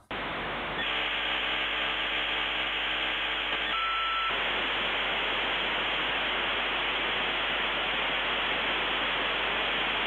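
Steady hiss of telephone-line static, with one short beep about four seconds in: a dead line after the call drops for lack of credit.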